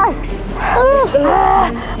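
A high-pitched voice moaning and groaning in a drawn-out, strained way, acted labour cries. It gives a couple of short rising-and-falling cries, then a longer held moan past the middle.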